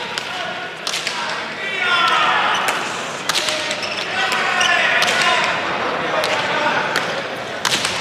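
A hand-pelota rally: the hard leather ball is struck with bare hands and smacks off the front wall and the wooden floor of the fronton. It makes a series of sharp cracks, roughly one or two each second, ringing in the big hall.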